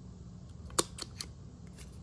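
Handheld hole punch cutting through a paper tag: one sharp click a little under a second in, followed by a few lighter clicks.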